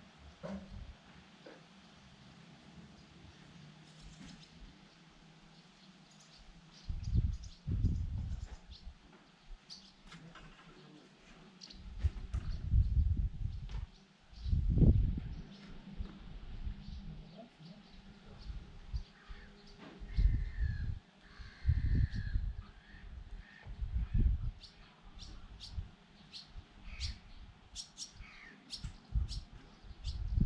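Birds calling with short, high chirps, coming thick and fast near the end, over irregular surges of low rumble that are louder than the birdsong.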